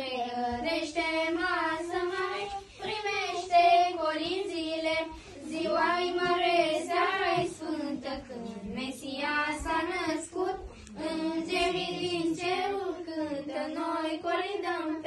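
A group of children singing a Romanian Christmas carol (colind) together, unaccompanied, in a continuous melodic line broken only by short breaths.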